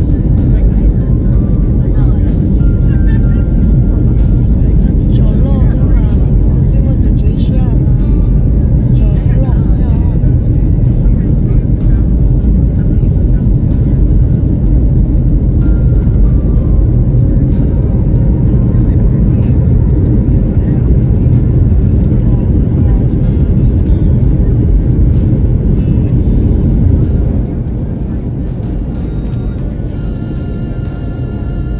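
Jet airliner cabin noise in flight: a loud, steady low rumble of engines and rushing air. It drops noticeably in level near the end.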